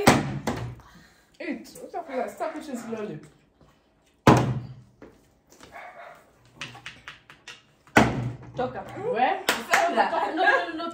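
Three heavy thuds, at the start, about four seconds in and about eight seconds in, of a flipped plastic bottle landing on a hard surface, with people talking between them.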